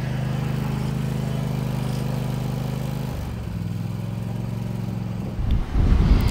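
Toro TimeCutter MAX zero-turn mower engine running steadily. About three seconds in, its note drops a little lower and softer, and a low rumble comes in near the end.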